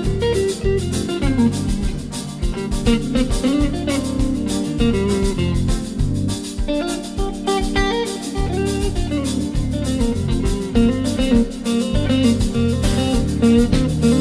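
Live band in an instrumental passage: a Stratocaster electric guitar plays a lead line with bent notes over bass guitar and drums.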